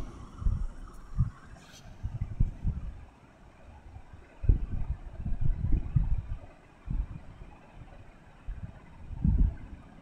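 Appams frying in ghee in a cast-iron appam pan and being turned with a metal skewer: a faint sizzle under irregular low thumps and rumbles.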